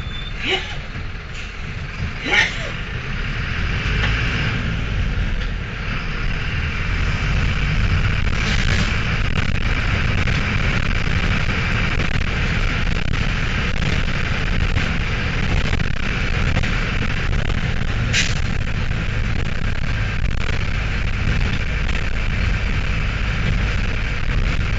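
Mercedes-Benz OM904 four-cylinder turbodiesel of a Mercedes-Benz LO-914 minibus, heard from inside the cabin while driving, with a steady low rumble. The engine grows louder about six seconds in, then holds. Sharp knocks and rattles from bumps in the road come about half a second in, about two seconds in, and about eighteen seconds in.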